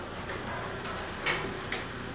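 Automatic fortune cookie baking machine running quietly, with a faint steady hum and small mechanical ticks, and a brief scrape a little over a second in.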